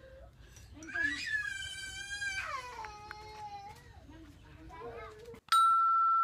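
A woman's exaggerated, crying wail: one long high-pitched wail that drops in pitch partway through, then softer whimpering sounds. Near the end a loud, steady electronic beep cuts in abruptly.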